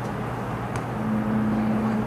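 Open-air ambience with a steady low hum. A second, slightly higher steady tone comes in about halfway through and holds, with one faint click just before it.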